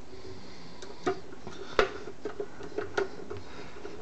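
Hand-driving screws into a metal equipment cover: a handful of short, sharp clicks and taps of the tool and fingers against the case, the loudest just under two seconds in.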